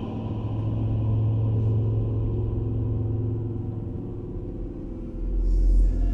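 Dark ambient music: a deep, steady low drone, with a deeper sub-bass rumble swelling in about five seconds in.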